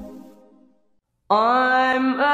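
Recorded music: one love song fading out to silence, then after a short gap the next song starting suddenly with a long held, slightly wavering note.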